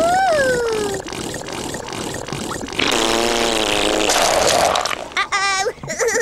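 The Tubby Custard machine's squirt sound effect: a loud, wet, buzzing spurt about three seconds in, lasting a second and a half and trailing into a splashy spatter as custard squirts out. It is preceded by a high rising-and-falling "ooh" from a Teletubby.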